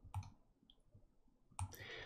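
Faint clicks: one shortly after the start and another about three quarters of the way through, followed by a soft hiss. Otherwise near silence.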